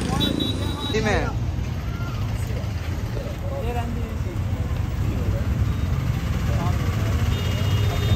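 Street background: a steady low rumble of traffic, with scattered voices nearby.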